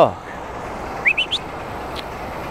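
A quick run of four short, rising bird chirps about a second in, over a steady background noise.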